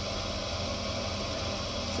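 Electric potter's wheel running steadily: a low motor hum under an even hiss while the wheel head spins.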